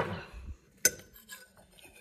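Metal spoon clinking and scraping against a ceramic bowl of pasta: a sharp clink at the start, another a little under a second in, and lighter taps after.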